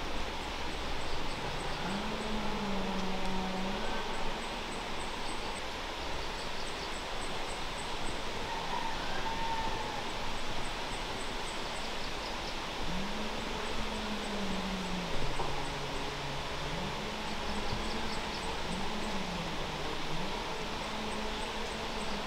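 Outdoor rural ambience: a steady hiss with faint high chirping repeating in quick runs, and several low, drawn-out sounds that rise and fall in pitch, each about two seconds long, about two seconds in and again from about thirteen seconds on.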